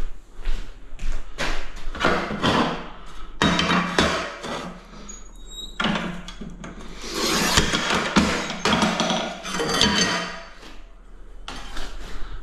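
Knocks and scraping from tiling work: ceramic wall tiles being tapped and shifted into place. There are repeated sharp knocks, with longer scraping stretches in the middle and toward the end.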